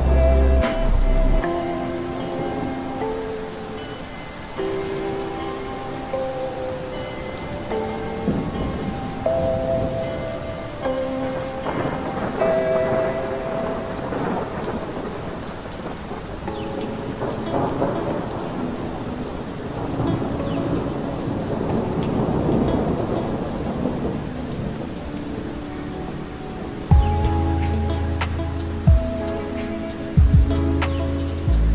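Rain with rolling thunder mixed under a slow lo-fi track of soft held keyboard notes. The bass drops out about a second in, the thunder swells through the middle, and the bass and drum beat come back near the end.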